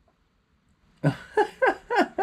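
About a second of near silence, then a small child's high-pitched wordless vocal sounds: several short bursts in quick succession, rising and falling in pitch.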